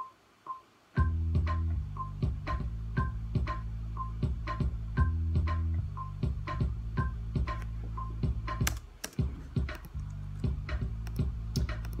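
Synth bassline from the CM Kleer Arp software instrument, low held notes played in over a looping drum beat with a steady tick. The bass comes in about a second in, after a moment of near silence.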